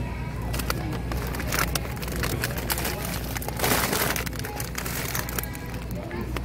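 Plastic bag of frozen shrimp crinkling and clicking as it is handled, with a louder burst of rustling a little past halfway, over a steady low hum.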